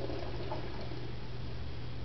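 Quiet room tone with a steady low hum.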